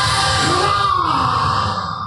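A man's loud, drawn-out voice, delivered like a stage shout, over background music.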